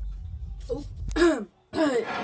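A man clearing his throat over a low background music bed, which cuts out about one and a half seconds in.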